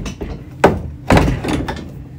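Metal fittings knocking against the plastic hull of a NuCanoe fishing kayak as the landing-gear mount is handled: a sharp knock a little over half a second in, then a short clattering thud about a second in.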